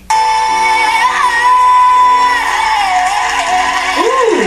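A female pop singer holds a long, very high belted note over a full backing track, cutting in abruptly as playback resumes. The note lifts slightly about a second in, holds steady, then falls away after about two and a half seconds.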